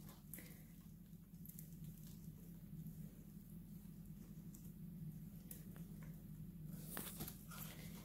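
Faint rustling and light patter of hands handling a calathea's lifted-out root ball, with crumbs of dry potting soil dropping. There is a faint steady low hum under it, and the rustle is a little louder near the end.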